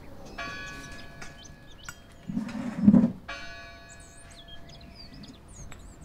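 A bell struck twice, about three seconds apart, each stroke ringing on and fading, with birds chirping. Just before the second stroke there is a louder, low, short thump.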